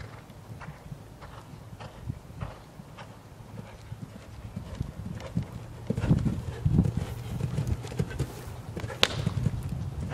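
Hoofbeats of a horse cantering on sand arena footing, growing louder from about six seconds in as it comes close, with one sharp knock near the end.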